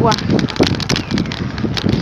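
Wind buffeting the microphone of a phone carried on a moving bicycle, a steady rumbling rush with irregular small clicks and knocks from the ride over the street.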